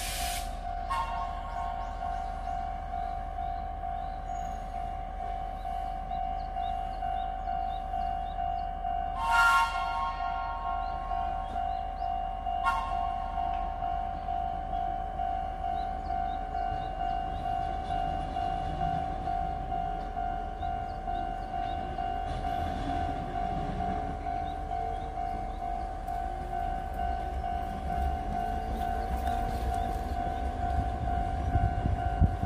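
Oigawa Railway Ikawa Line train standing at a platform, with a steady high-pitched hum throughout. A short hiss about nine and a half seconds in, and a sharp click a few seconds later.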